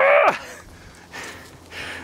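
A man's short strained grunt of effort, falling in pitch, as he tries to draw a heavy warbow aimed straight down. The rest is much quieter.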